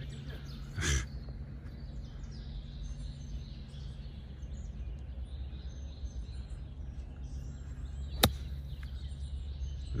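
A golf club striking the ball off fairway grass on a short pitch shot: one sharp click about eight seconds in, the loudest sound. Under it runs steady wind rumble on the microphone with faint birdsong, and a brief burst of noise comes about a second in.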